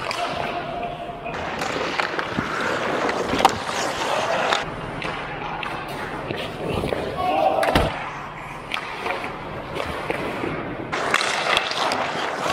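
Ice hockey play close to the net: skate blades scraping and carving on the ice, with sticks and puck making sharp hits, the loudest about three and a half seconds in and another knock near eight seconds.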